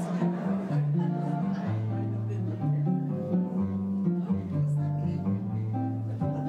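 Piano playing a slow passage of long held notes over a bass line that moves step by step; it has come in early, before the leader gave the cue.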